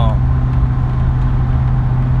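Car cabin noise while riding on the road: a steady, loud low drone of engine and road rumble.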